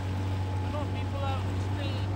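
Boat motor running at a steady pace, a constant low hum, with short high chirping calls over it from about a second in.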